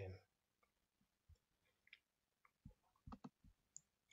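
Near silence with a few faint, short clicks and taps: one about a second in, a couple around the middle, and a small cluster in the last second and a half.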